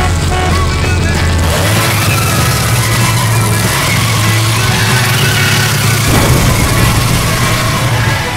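Car engine running with a deep, steady rumble, mixed with music.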